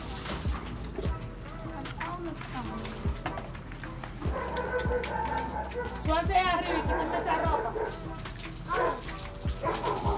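Indistinct voices in the background with some music, and scattered light clicks and knocks through the first few seconds.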